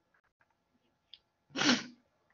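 A single short sneeze about one and a half seconds in, as loud as the speech around it, after a faint click.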